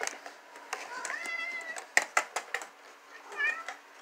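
A cat meows, a rising call about a second in and a short one near the end. Between them, a small pull-tab cat food can is cracked open with a quick run of sharp clicks about two seconds in.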